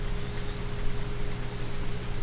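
Background noise between sentences: a steady low hum with a faint high tone over an even hiss.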